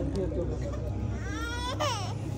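An infant crying: a single high wail that begins about a second in, rises in pitch, then falls and breaks off near the end, over crowd chatter.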